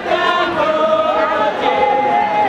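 A group of mourners singing together without instruments, holding long notes that step to a new pitch twice.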